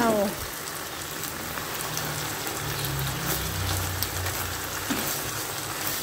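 Minced pork, banana peppers and baby corn frying in a wok as holy basil leaves are stirred in with a wooden spatula: a steady sizzling hiss.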